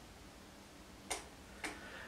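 Quiet room tone with two faint short clicks about half a second apart, a little past the middle.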